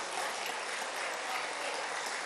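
Steady applause from members of parliament in the chamber, even and distant in the pause between the speaker's lines.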